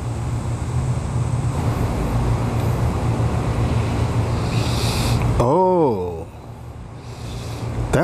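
A steady low rumble like road traffic that grows over the first five seconds and drops away suddenly just past halfway. As it drops, a man gives a short hummed 'mm'.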